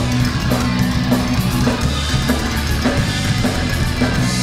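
Heavy metal band playing live without vocals: electric guitars, bass guitar and drum kit, with drum hits falling in a steady beat about twice a second.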